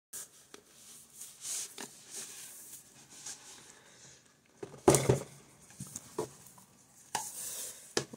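Hardcover books being slid out of a cardboard slipcase and handled: rustling and sliding, scattered light clicks, a thump about five seconds in, and a short hissing slide of cover against board near the end.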